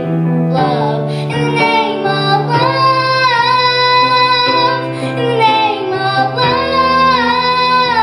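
A girl singing into a handheld microphone over a recorded instrumental backing of sustained chords. Her voice comes in about two seconds in and holds long, wavering notes.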